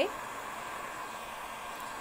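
Handheld electric heat gun running on its high setting, a steady rush of hot air blowing onto denim.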